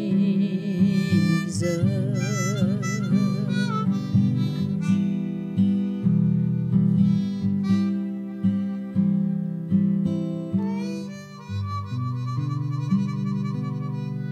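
Harmonica played with a wavering vibrato over strummed acoustic guitar, an instrumental duet. Near the end it settles on held notes that slowly fade.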